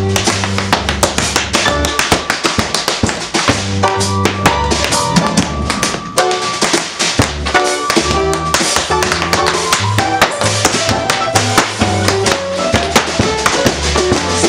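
Tap shoes striking a wooden floor in a rapid, dense run of taps, danced over a live band playing upright bass and drum kit.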